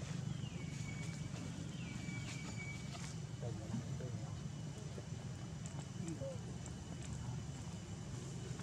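Two thin high-pitched calls, each dropping in pitch and then holding steady, in the first three seconds, followed by a few faint lower calls, over a steady low background rumble.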